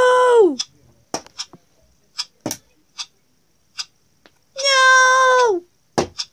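Two long, high-pitched wordless cries from a character voice, each held steady and then falling away. Between them come several short, sharp clicks and knocks as the scissors and balloons are handled.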